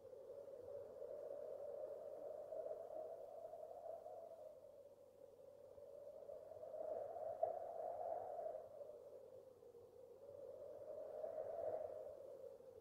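A soft, hollow sustained tone that swells and fades in three slow waves.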